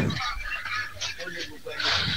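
A man's voice: the loud tail of a drawn-out exclamation at the start, then quieter broken speech sounds.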